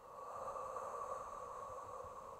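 A woman's slow, drawn-out exhale, a steady breathy rush of air that begins just after the start. It is the exhale phase of Pilates lateral rib breathing.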